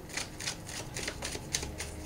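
Tarot deck being shuffled by hand: a quiet run of short, irregular card clicks.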